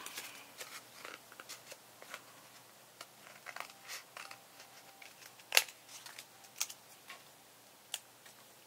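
Scissors cutting the corners off a glued cardstock panel: scattered short snips with paper rustling, the sharpest snip about five and a half seconds in.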